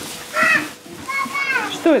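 Young children's high-pitched voices calling out without words: a short call about half a second in, then a longer one that falls in pitch, with a word spoken right at the end.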